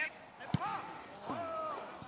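A single sharp thud of a football being kicked about half a second in, followed by people's voices calling out across the pitch.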